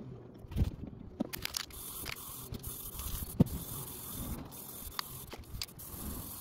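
Plastikote aerosol spray paint can hissing in a steady spray. The spray starts about two seconds in, after a few sharp knocks and clicks.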